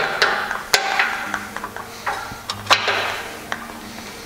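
Sharp, irregular clicks and knocks of aluminum railing parts and a hand clamp being handled, about four in all, as a stair post mount bracket is clamped onto a railing post.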